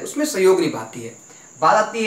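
A man speaking, pausing briefly partway through, with a faint steady high-pitched whine underneath the whole time.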